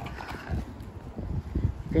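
Footsteps of a person walking across concrete paving blocks, heard as irregular low thuds.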